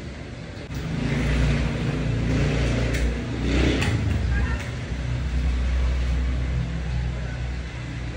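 Low, steady rumble of a vehicle engine. It swells about a second in and eases off a little near the end.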